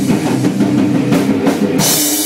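A rock band playing live without bass: electric guitar chords over a drum kit, with cymbals washing in strongly from about halfway through.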